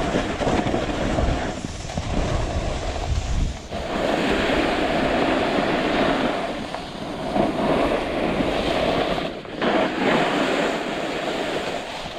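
Snowboard riding over soft spring snow: the board's base and edges hiss and scrape on the snow, swelling and easing with the turns. Wind buffets the camera microphone, loudest in the first few seconds.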